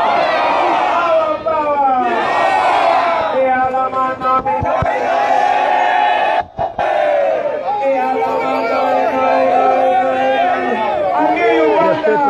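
A large crowd cheering and shouting, many voices calling out at once. A steady held tone sounds over it twice, from about three and a half seconds and again from about eight seconds, each lasting a few seconds.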